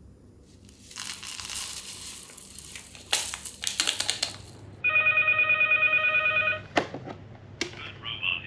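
Paper sugar sachets crinkling and being torn open. Then an electronic telephone ring, a steady warbling multi-tone lasting about two seconds and louder than the rest, followed by two sharp clicks.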